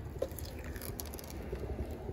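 Thin plastic protective film being peeled off the metal plate of a Hoover HushTone vacuum's brush-roll housing: faint crinkling with a few small ticks.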